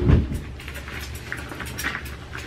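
Scissors cutting the small tip off a plastic hair-dye applicator bottle: a soft thump of handling at the start, then a few light clicks and snips, the sharpest near the end, over a low steady hum.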